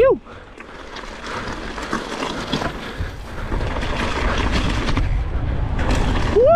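Mountain bike ridden fast over a dirt trail: wind buffeting the camera microphone with a deep rumble, tyres rolling and rattling over dirt and stones, growing louder as speed builds. It opens with a short rising 'woo' shout.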